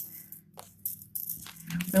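A few short, quiet clicks and rattles of buttons and plastic bags being handled, over a faint steady hum.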